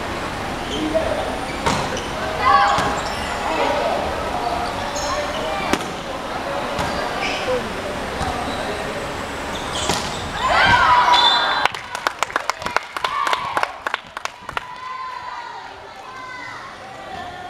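Indoor volleyball rally in a large echoing sports hall: players' and supporters' voices calling and shouting, with occasional sharp thuds of the ball being struck. About ten seconds in, the shouting swells into a cheer, followed by a quick run of sharp claps that dies away near the end.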